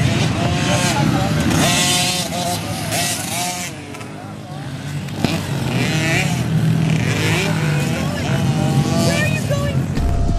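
Small dirt bike engines revving on a motocross track, their pitch rising and falling over and over as the riders throttle up and shift, with several bikes overlapping. The sound dips briefly about four seconds in.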